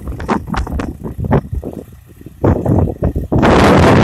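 Gusty wind buffeting the microphone in irregular crackling blasts, with a brief lull about halfway and a loud rush near the end, over the low, steady running of a Swaraj tractor's diesel engine pulling a cultivator.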